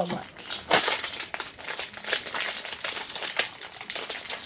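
Plastic blind-bag wrappers crinkling and crackling in the hands as they are handled and opened.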